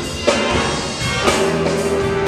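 A jazz band playing live, with drum kit prominent. There is a sharp drum hit about a quarter of a second in, and a sustained note starts just past the middle.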